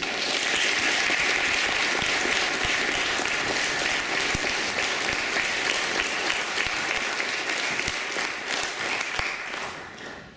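Audience applauding: many hands clapping together, steady and then dying away near the end.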